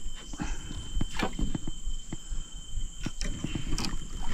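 A hooked fish splashing at the water's surface beside an aluminium boat as it is drawn toward a landing net, with irregular knocks and clicks throughout.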